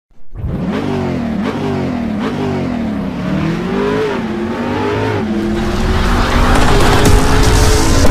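Car engine revving hard, its pitch climbing and dropping several times in quick succession, then holding a steadier note as a rushing noise builds louder toward the end.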